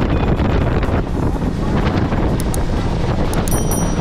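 Heavy wind buffeting the camera microphone aboard a small boat under way, with the rush of water and the boat's running noise beneath it.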